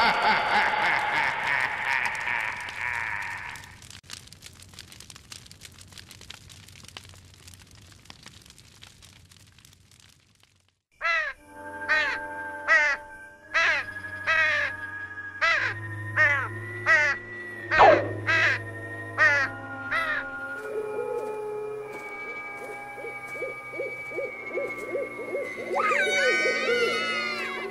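Spooky night-time sound effects: a wavering pitched sound fades away over the first few seconds, then after a brief near-silent gap a run of about a dozen short crow caws sounds over a sustained eerie music drone. Near the end a rapid low trill joins the held tones.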